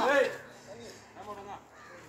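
A man's loud shouted voice at the start, then two short, fainter calls about a second and a quarter in, over low background noise.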